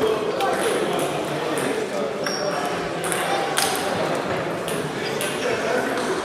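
Table tennis balls clicking off bats and tables from several games at once, in quick irregular strings. The clicks echo in a large sports hall over a murmur of voices.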